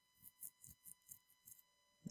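Near silence: room tone with a few faint, short clicks from a computer mouse.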